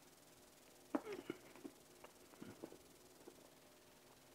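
Faint mouth sounds of a man chewing a bite of hot dog in a bun, picked up close by a lapel microphone: a few soft, wet clicks and smacks starting about a second in and spread over the next couple of seconds.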